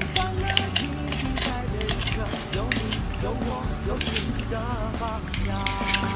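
Background music, with quick small clicks and scrapes of a plastic spoon working in a foil dessert tray.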